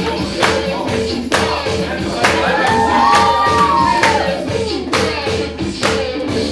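Music with a steady drum beat and a singing voice, played loud over a sound system for the dancers.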